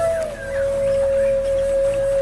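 A flute holding one long steady note after a short slide down at the start, over a low sustained ambient drone, in calm meditation-style music.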